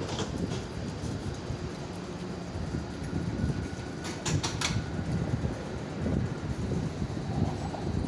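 A stationary tram at a stop, with a steady low rumble. Around four seconds in its doors open, with a quick run of clicks and clunks, preceded by a faint thin tone.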